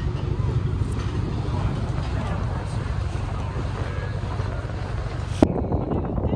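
Steady low rumble of a tour boat's engine running under way, with wind on the microphone. A short click comes about five and a half seconds in, after which the rumble sounds thinner.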